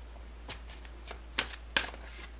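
A tarot deck being handled and shuffled by hand: a quick run of short card snaps and flicks, the two loudest about halfway through and near the end.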